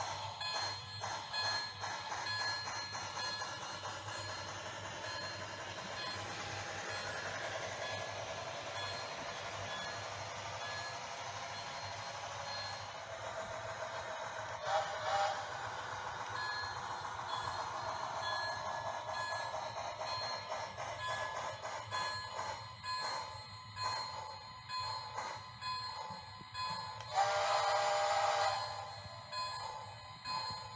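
Lionel HO scale Berkshire model steam locomotive running steadily along the track with its freight cars, its motor and wheels on the rails making a continuous hum with light clicking. Near the end a louder tone sounds for about two seconds.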